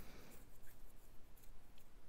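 Faint, uneven rustling and small scratchy handling noises in a quiet room.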